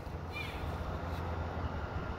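Outdoor ambience: a steady low hum under a faint background hiss, with one brief bird chirp about a third of a second in.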